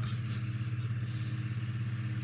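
A motor running steadily in the background, a low hum with a fast, even flutter.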